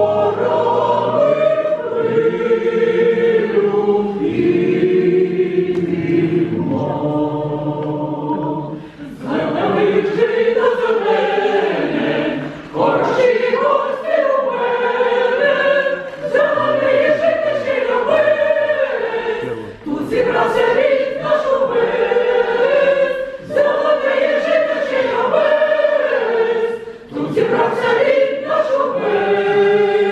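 Ukrainian folk choir of mixed women's and men's voices singing, in phrases with short breaths between them; the singing grows fuller about nine seconds in.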